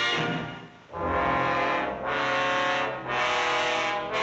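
Orchestral film score led by brass: after a brief fade, loud held brass chords come in about a second in, a new chord roughly every second.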